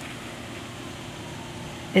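Steady background hiss with a faint low hum, in a pause between spoken phrases.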